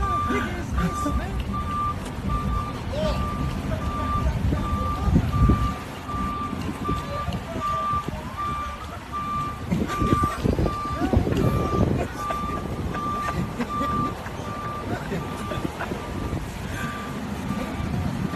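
A vehicle's backup alarm beeping steadily at one pitch, about one and a half beeps a second, over the low rumble of street traffic.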